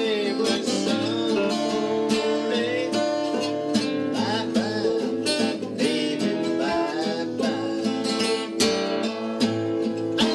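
Acoustic guitar strummed in a steady rhythm while a man sings along.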